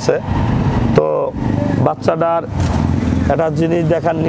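Short snatches of men's speech over a steady low engine hum, most plain in the first two seconds.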